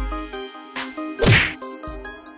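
Fighting-game style punch and hit sound effects, several sudden whacks with the loudest about halfway through, over game-style background music.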